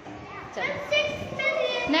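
Children's voices speaking and calling out, with a voice saying "next" near the end.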